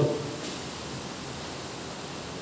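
Steady, even background hiss with no speech, and a faint click about half a second in.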